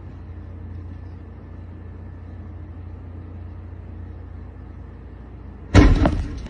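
A steady low rumble, then near the end a sudden loud whoosh as a fire set inside an SUV flares up.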